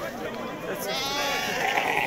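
Sheep bleating: one long, wavering call starting a little under a second in.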